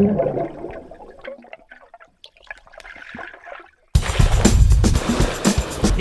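Music fades out over the first second, leaving faint bubbling clicks. About four seconds in, a loud rush of water noise starts suddenly.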